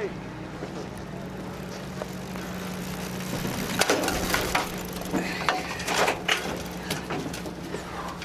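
Knocks and clunks of a dirt bike being pushed up an aluminium loading ramp into a pickup truck bed, several sharp bangs coming close together about halfway through, over a steady low engine-like hum.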